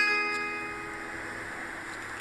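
The song's final accompaniment chord ringing out and slowly fading away.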